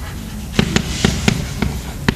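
Chalk writing on a blackboard: a run of sharp clicks as the chalk strikes the board, with a brief scratchy scrape about halfway through.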